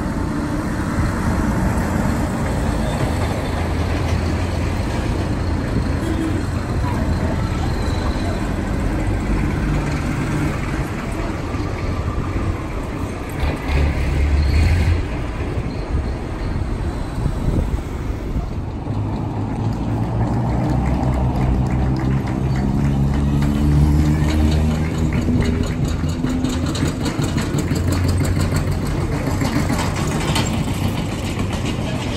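Tractor engines running as tractors drive past one after another, mixed with passing car engines. The pitch of the engines rises and falls as they pass. Near the end an older tractor's engine comes close with a fast, even knocking beat.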